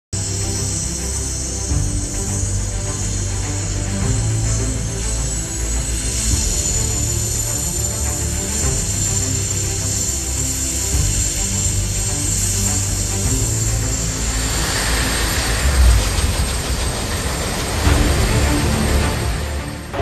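Sikorsky-Boeing SB-1 Defiant compound coaxial helicopter prototype on a ground run, its turbine giving a steady high whine. A broader rushing noise builds over the last five seconds. Music plays underneath.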